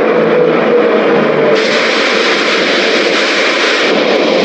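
A loud, steady rushing noise in the added song soundtrack, with a faint falling tone beneath it; it turns brighter and hissier about one and a half seconds in.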